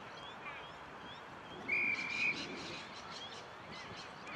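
Small birds chirping repeatedly in short, rising calls. About two seconds in there is one short, steady, high whistle, the loudest sound.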